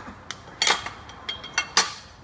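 Metal hand tools (a ratchet and a long wrench) clinking and knocking against the engine's fan-pulley parts: a quick series of sharp metallic clinks, a few with a short ring, the loudest about two-thirds of a second in and near the end.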